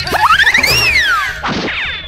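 Cartoon sound effect over background music: a whistling tone climbs in quick steps, then glides back down, followed by a short falling sweep near the end, like a slide whistle or boing effect.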